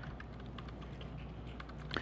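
Faint, quick, irregular keystrokes on a computer keyboard: someone typing in a search.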